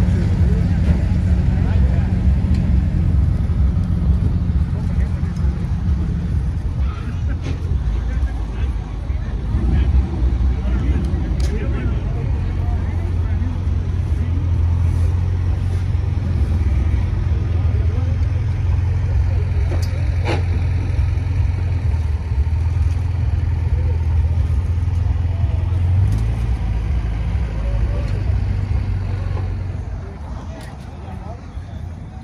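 A vehicle engine running steadily at low revs, a deep hum that shifts slightly a few times.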